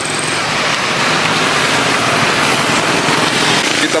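Road traffic: a vehicle passing, heard as a steady rushing noise.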